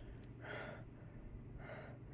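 A woman's faint breathing: two soft breaths, one about half a second in and a shorter one near the end, between sentences.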